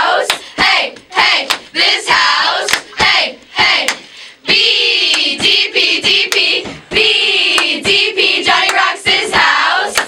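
A group of teenage girls' voices chanting a cheer in unison close to a studio microphone, punctuated by sharp rhythmic hand claps, with a short break about four seconds in.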